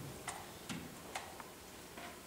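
Quiet room tone with about four faint, light clicks, unevenly spaced.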